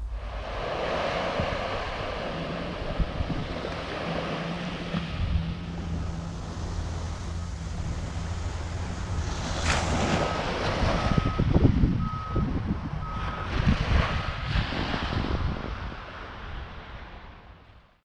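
Wind buffeting the microphone over surf breaking on a beach, with a low steady hum in the first half. About ten seconds in, a vehicle's reversing alarm beeps about seven times, roughly one and a half beeps a second. Everything fades out near the end.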